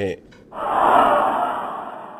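A breathy whoosh sound effect that swells about half a second in and fades away slowly, the effect for a character vanishing by magic.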